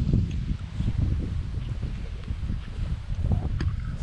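Wind buffeting a phone's microphone outdoors, an uneven low rumble, with a single sharp click a little before the end.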